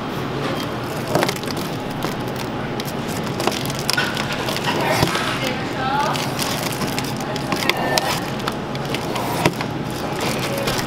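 Crinkling of a mylar foil balloon and rustling of curling ribbon as the ribbon is tied onto the balloon's tab, a run of short crackles over a steady background hum.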